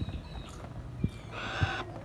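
A sulphur-crested cockatoo gives one short, harsh screech a little over a second in, after a couple of faint knocks.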